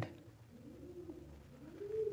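A pigeon cooing faintly in the background: two low coos, each rising and falling in pitch.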